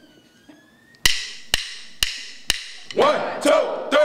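Drumline count-off: drumsticks clicked together four times, about half a second apart, then the marching drums start playing about three seconds in.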